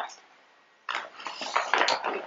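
Near silence for about a second, then rustling and clattering of items being handled and moved about on a table.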